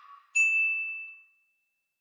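A single bright, high ding, an on-screen notification-bell sound effect, rings about a third of a second in and fades away over about a second. The fading tail of an earlier, lower tone dies out just before it.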